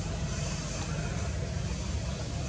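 A steady low rumble with a fainter hiss above it, even in level and with no distinct events.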